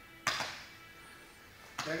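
A single sharp slap about a quarter of a second in, dying away quickly with a short room echo.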